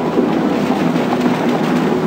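A vehicle driving through a stone-lined tunnel: a steady rumble of engine and tyres with no sharp knocks.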